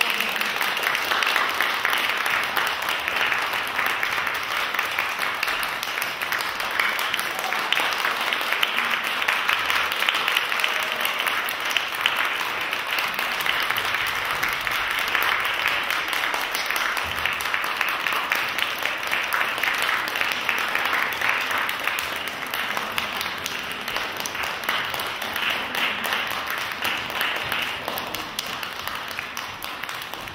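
Audience applauding, a dense steady clapping that breaks out suddenly and eases off gradually near the end.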